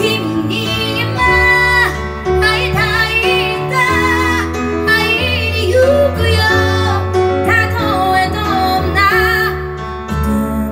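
A woman singing a Japanese pop ballad over instrumental accompaniment, with vibrato on her held notes and sustained bass notes underneath.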